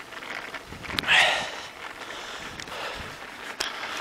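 A cyclist's loud breath out about a second in, over steady wind and riding noise on the microphone, with a few sharp clicks near the end as the handheld camera is turned around.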